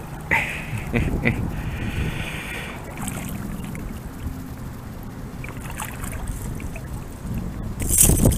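Water splashing and sloshing as a hooked carp is held and handled in shallow river water, over a steady low rush. A short laugh comes just after the start.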